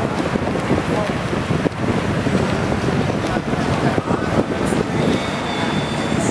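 Steady, echoing din of an indoor swimming pool during a backstroke race: the swimmers' splashing with indistinct voices mixed in.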